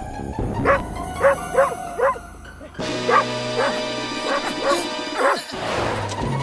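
A cartoon dog barking in short, quick barks: a run of about four, a pause, then about five more, over background music.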